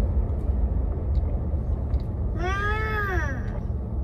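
Steady low road rumble inside a moving car, with a young child's high-pitched call about two seconds in, its pitch rising then falling over about a second.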